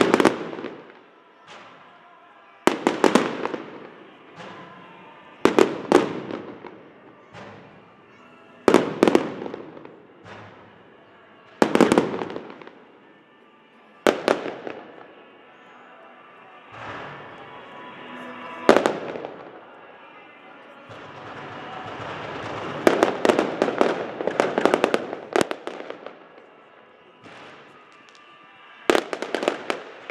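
Aerial firework shells bursting, sharp bangs about every three seconds, each trailing off in crackle. About two-thirds of the way through, a denser run of bursts and crackling lasts several seconds.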